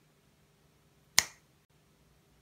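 A single sharp finger snap about a second in, with a short ring-off in a small room.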